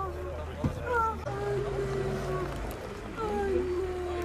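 A woman's voice held in long, drawn-out, slowly falling calls with no clear words, about three in a row, over a steady low rumble.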